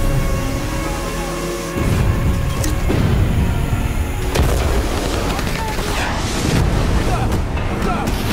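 Dramatic trailer score: a sharp hit, then held music tones, and from about two seconds in a loud, dense mix of deep booming percussion hits under rushing action sound.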